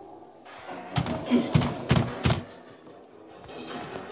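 Wire cage being shaken and lifted, rattling and knocking in a quick run of five or so clatters about a second in.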